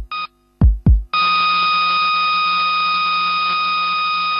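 Electronic heart-monitor sound effect in a programme sting. A short monitor beep and one paired heartbeat thump are followed, about a second in, by a long steady flatline tone.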